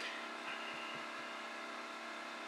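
Room tone: a steady electrical hum with a faint whine, and a few soft ticks in the first second.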